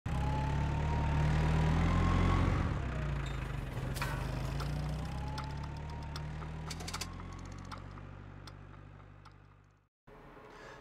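An engine running steadily, with a faint slowly rising whine over it and a few sharp clicks. It fades out gradually over the last few seconds.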